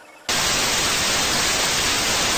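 A loud, steady hiss of static noise that switches on abruptly about a quarter of a second in.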